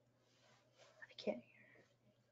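Faint, whisper-like fragments of a woman's voice coming through a webinar audio feed that is not working properly, barely audible, with one brief louder sound about a second in.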